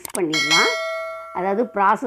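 Notification bell chime sound effect from a subscribe-button animation: a single ding about a third of a second in, fading out over about a second and a half, with a woman's voice before and after it.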